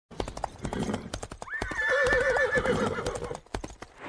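A horse galloping, its hooves clip-clopping fast, with a trembling whinny that starts sharply about one and a half seconds in and lasts about two seconds.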